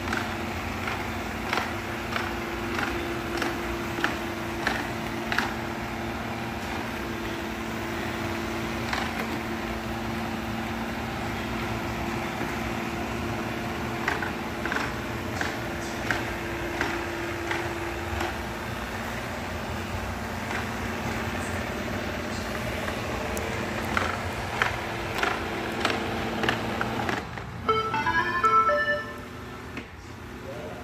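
Shark robot vacuum running with a steady motor and brush hum and repeated light clicks as it moves along the floor. Near the end the motors cut off and it plays a short electronic chime melody, its signal as it settles onto its dock to charge.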